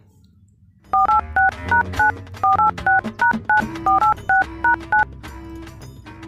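Mobile phone keypad dialling tones (DTMF): about fifteen short two-note beeps in quick succession, tapped out over about four seconds as a phone number is dialled.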